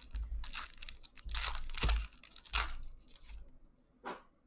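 Foil wrapper of a 2019 Donruss Optic football card pack being torn open and crinkled: a run of ripping and crackling bursts, loudest in the middle, dying away in the last half second.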